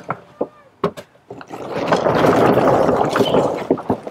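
Electric golf cart rolling forward over wood-chip mulch: a couple of clicks near the start, then from about a second and a half in a loud, grainy crunching rush of the tyres on the chips for about two seconds.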